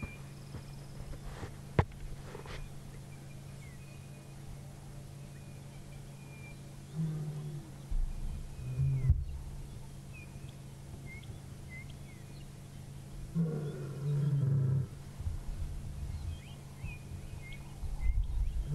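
Lioness giving soft, low contact calls rather than a full roar, sounding a bit sad, as if calling for her pride. Two short moaning calls come a little before the middle and a longer one, about a second and a half, comes later.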